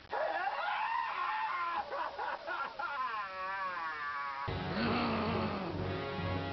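A man's drawn-out wailing cry, wavering and sliding in pitch. About four and a half seconds in it cuts off abruptly to a different sound with a low steady hum and music.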